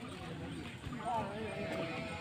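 Faint voices in the background, with voice-like rises and falls about a second in, over a low rumble of outdoor noise.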